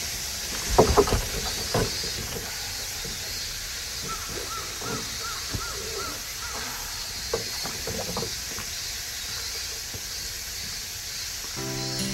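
Wooden oars of a rowboat knocking and dipping in the water a few times about a second in, over a steady high outdoor hiss. A short run of about seven quick, high chirps comes in the middle, and music starts near the end.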